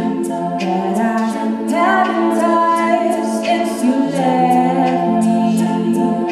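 All-female a cappella group singing held backing chords that shift about two and four seconds in, with sharp vocal-percussion ticks keeping the beat.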